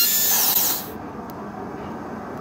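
Dental handpiece whining at high pitch as its bur trims the thin edge of a provisional crown, then winding down in pitch and stopping just under a second in.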